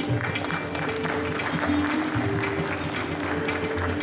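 Applause over instrumental background music with held notes.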